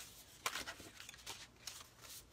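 Faint rustles and light taps of card stock being handled and slid across a tabletop, a few brief clicks, the clearest about half a second in.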